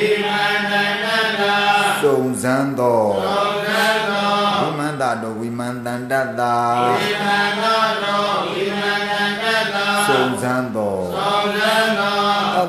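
A Buddhist monk chanting Pali text in a slow, melodic recitation, his voice holding long notes that glide up and down with only brief breaks.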